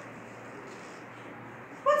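Quiet room tone with faint rustling as a person moves and handles picture cards; a woman's voice begins a question right at the end.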